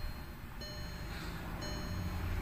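Car's interior warning chime ringing about once a second, each chime a short ring of several steady tones, with a low hum underneath.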